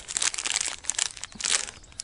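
Thin clear plastic packaging bag crinkling in the hands, a dense run of irregular crackles, as a battery cell is taken out of it.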